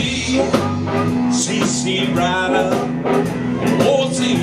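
Live blues band playing an instrumental passage: Fender Stratocaster electric guitar, Fender electric bass and drum kit, with a harmonica bending notes over them.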